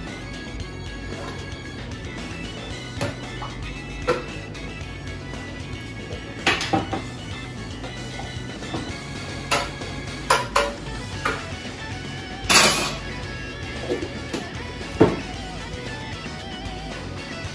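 Kitchen containers, a jar and a utensil being handled and set down on a wooden counter while ingredients go into a blender jar: about a dozen separate knocks and clinks, the loudest a longer scrape about three-quarters of the way in, over background music.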